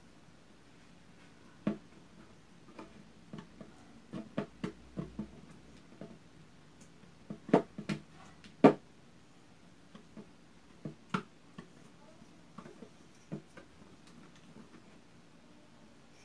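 Metal wire whisk stirring a glue and liquid-detergent slime mixture in a plastic bowl, its wires clicking and knocking irregularly against the bowl. A few sharper knocks stand out about halfway through.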